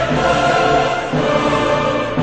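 Choral music: a choir singing slow, held chords.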